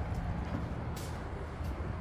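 A vehicle engine idling steadily with a low rumble, and a single click about a second in.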